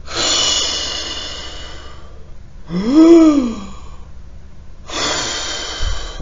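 A man taking a long, loud breath, then a short voiced sigh that rises and falls in pitch about three seconds in, and another breath near the end.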